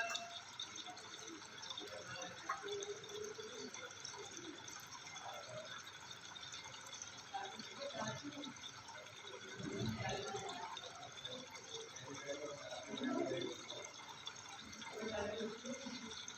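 Newborn baby sucking and swallowing sweet fluid from a nipple on a syringe, with faint, intermittent wet sucking sounds.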